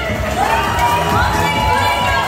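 A woman holds one long high sung note into a microphone over amplified party music, while the crowd cheers and shouts around her.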